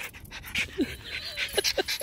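Small dog panting eagerly, with a few brief high whines, excited to have a stick thrown.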